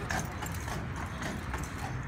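Hooves of a carriage horse clip-clopping at a walk on a paved road, over a steady low rumble.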